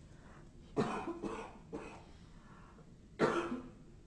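A person coughing: a run of three coughs about a second in, then one more about three seconds in.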